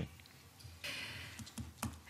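A brief dry rustle lasting about half a second, then a single soft click just before the next speaker begins.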